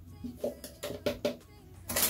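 A plastic scoop clicking and scraping against a plastic tub while dry bleach powder is scooped out and tipped in: several small, light knocks spread over the two seconds.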